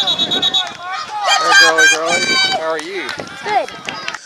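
Several high-pitched voices shouting and calling out on a youth football field, loudest in the middle. A steady high whistle-like tone trails off about half a second in.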